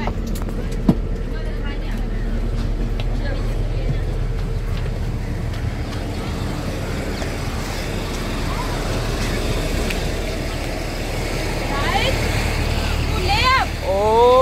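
Steady low rumble of road traffic and vehicle engines, with a few rising tones near the end.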